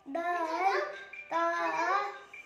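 A boy chanting the names of Arabic letters in a sing-song recitation, two melodic phrases with a short pause between.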